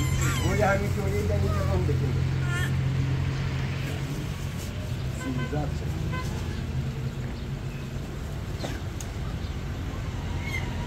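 People talking, mostly in the first two seconds, over a steady low engine hum that fades about seven seconds in.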